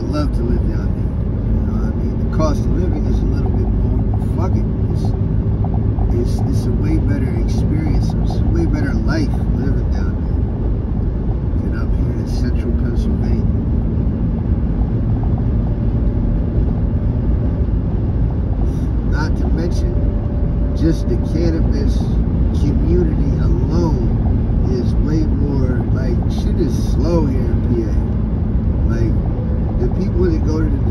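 Steady road and engine noise inside a car cruising at highway speed, with a voice heard over it on and off.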